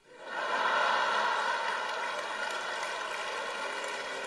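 Live audience applauding, swelling within the first second and then slowly easing off.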